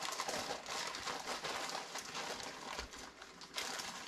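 A plastic bag crinkling and rustling as it is handled, an irregular crackle that eases off briefly about three seconds in and then picks up again.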